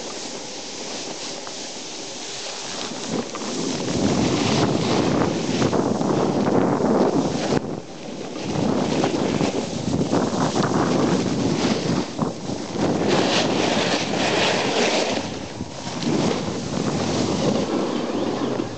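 Wind buffeting the microphone in gusts, a rough rushing noise that grows much louder about four seconds in and briefly eases twice.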